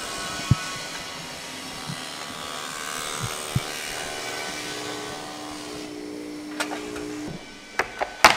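Factory-floor machinery running: a steady hum and whine with a few knocks, cutting off abruptly about seven seconds in, followed by a couple of clicks.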